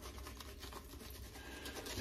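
Shaving brush swirled through soap lather on a bearded face: a run of faint, quick scratchy strokes, several a second.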